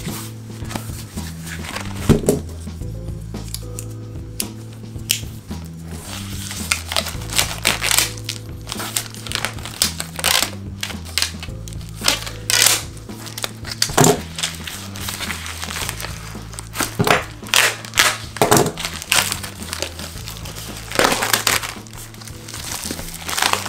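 Plastic shrink wrap crinkling and tearing in short, repeated rustles as it is slit with a knife and pulled off a cardboard-backed bundle of comics, over background music.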